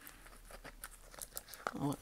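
Faint crinkling and rustling of clear plastic wrap and tape as a coin packed against a card is worked loose by hand, with small scattered crackles.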